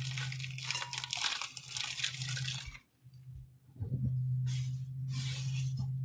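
Plastic produce bag crinkling as it is folded and closed up by hand: crackling for the first few seconds, then two shorter bursts near the end, over a steady low hum.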